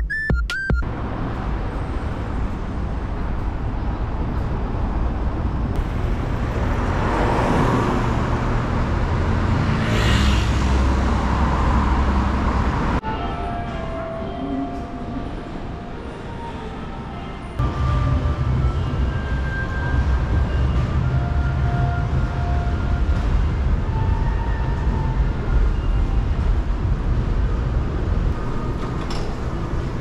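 Ambient noise of a subway station concourse: a steady rumble, with a train passing that swells and fades in the first half, then echoing background noise with faint short tones. The sound changes abruptly several times, as separate recordings are cut together.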